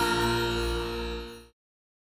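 Logo intro music ending on a held chord that fades and then cuts off abruptly about one and a half seconds in, leaving silence.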